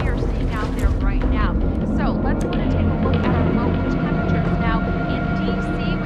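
Indistinct voices over a steady low rumble, with held background music tones underneath.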